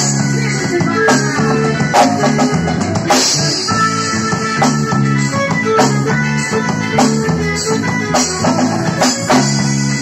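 Live forró band playing an instrumental passage on drum kit, electric guitar, bass guitar and keyboard, with steady drum beats and a cymbal crash about three seconds in.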